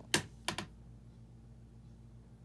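Two short, crisp handling sounds on paper near the start, about a third of a second apart, the first the louder, followed by a faint steady hum.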